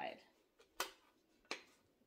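Small plastic toy trunk being closed and handled: two sharp clicks about three quarters of a second apart as its little latches are snapped shut.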